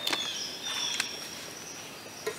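Faint, high, steady insect trill, possibly cricket-like, in the woods, with two light clicks, one at the start and one about a second in.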